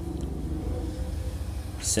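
Steady low background rumble and hum, with no speech.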